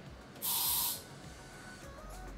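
A single short burst of hiss from an aerosol hair-spray can, about half a second long and starting about half a second in, misting setting spray onto curled hair to hold the curls.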